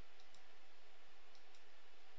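A few faint, sharp clicks, two close together near the start and one more about a second later, over a steady hiss with a low hum.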